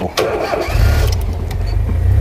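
Open safari game-drive vehicle's engine being started: a brief crank, then the engine catches about two-thirds of a second in and runs with a steady low rumble.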